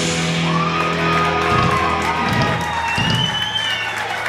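Heavy metal band playing live, a final held chord ringing out under a few drum hits, with whoops and cheers from the crowd.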